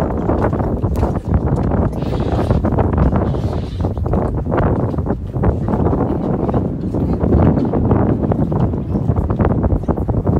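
Wind buffeting a phone's microphone: a loud, gusty low rumble that surges and dips throughout.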